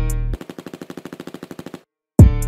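Machine-gun sound effect dropped into a trap beat: the 808 bass cuts out and a rapid burst of automatic gunfire follows, about a dozen shots a second for a second and a half, stopping dead just before the end.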